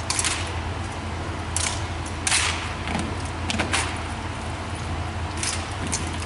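Drill rifles being spun, slapped and caught in hand: a string of sharp, irregular slaps with a light metallic rattle, about seven in all, with a short echo after the loudest.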